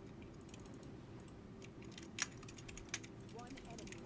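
Faint computer keyboard typing and key clicks, with two louder clicks a little past two and three seconds in.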